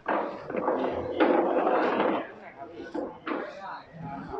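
Voices of people talking close by, with a loud stretch of talk from the start to about two seconds in and a shorter burst a little after three seconds.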